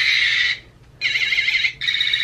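A small handheld light-up toy playing an electronic sound effect: a high, warbling, alarm-like tone in three bursts of about a second each, with short gaps between them.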